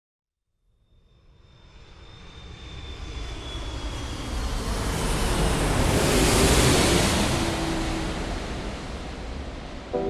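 An intro whoosh effect: a long swell of rushing noise with a deep low end. It rises out of silence about a second in, is loudest a little past the middle, then eases off. A faint, slowly falling whistle rides on top in the first few seconds.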